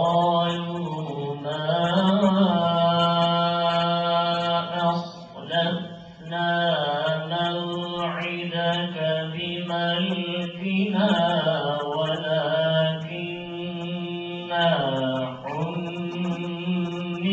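A man reciting the Quran in Arabic in a melodic chant, in long held phrases that glide up and down, with a brief pause for breath about five seconds in.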